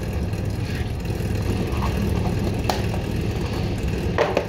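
Steady low hum of a kitchen extractor hood's fan motor, with a single sharp click about two-thirds of the way in.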